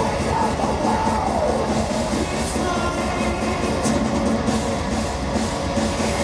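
Heavy metal band playing live, loud and dense, with electric guitar and a man singing into the microphone over it.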